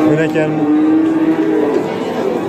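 A cow mooing: one long, low, steady call that ends near the end, over the hubbub of a livestock market.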